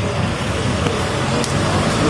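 Steady noise of road traffic.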